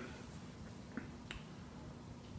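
Quiet room tone with two faint, short clicks about a second in, a third of a second apart.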